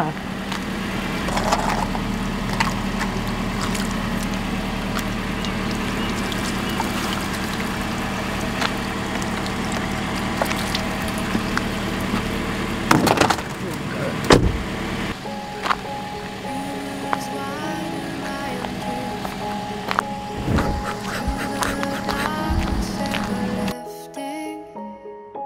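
Car engine idling with a steady hum, broken by a couple of sharp knocks a little past halfway. Gentle background music comes in soon after and plays over the idle until the engine sound cuts off just before the end.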